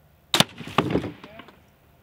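Crossbow shot: a sharp crack as the bolt is loosed and strikes a water-filled balloon, bursting it, followed about half a second later by a wooden knock and clatter as the plywood backplate is knocked flat.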